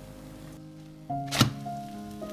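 Soft background music, with one sharp thunk about halfway through as a spatula turns the egg-and-tortilla omelette over in the frying pan.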